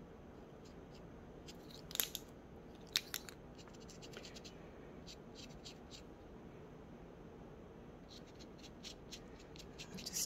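Faint scratching and tapping of a silver paint marker's nib worked along the rough, creased edge of a resin coaster, with a couple of sharper clicks about two and three seconds in.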